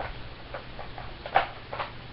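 Handling noise: a few short, light clicks and knocks of toy pieces being picked up and moved, the loudest about one and a half seconds in.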